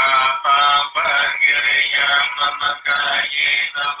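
Music with a voice singing in Vietnamese.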